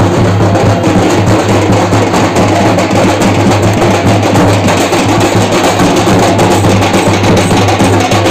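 A group of large drums beaten together in a dense, unbroken rhythm, with a steady low hum underneath.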